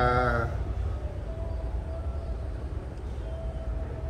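A man's drawn-out vowel for about half a second at the start, then a low steady background rumble with a faint hum that comes and goes.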